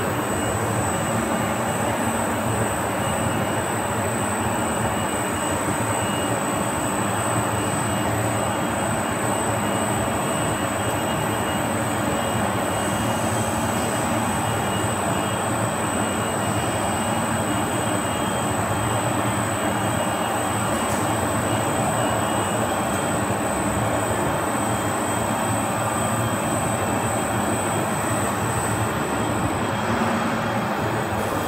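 Glass laminating line running: steady machinery noise from the conveyor rollers and nip-roll press, with a thin high-pitched whine over it.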